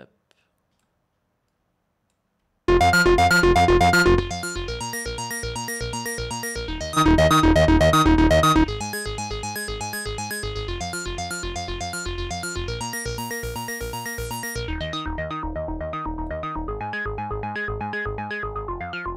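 Arturia Mini V3 software Minimoog synthesizer playing a fast sequenced line of rapidly repeated notes, starting about three seconds in, with the filter resonance raised and the drive pushed hard. It gets louder twice for a second or so. Pushed to these extremes, the emulation loses its character.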